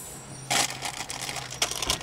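Close rustling and crinkling with many small crackling clicks, starting about half a second in, over a faint steady low hum.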